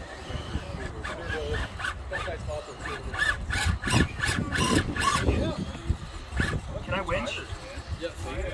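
People talking in the background, with a cluster of sharp clicks and knocks about three to five seconds in as a scale RC rock crawler's tyres and chassis work over the rocks.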